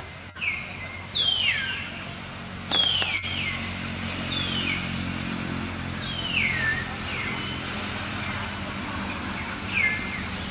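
A bird calling over and over, each call a quick downward-sweeping whistle, about one a second, over a steady low engine hum. A few sharp knocks sound in the first three seconds.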